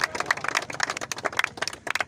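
A small crowd applauding: quick, irregular hand claps that thin out toward the end.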